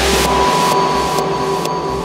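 Progressive house music in a transition: a white-noise sweep peaks and fades while the deep bass drops out about half a second in, leaving a single held high synth tone over the thinning mix.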